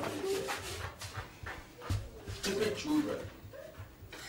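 A woman sobbing in short, broken whimpering cries.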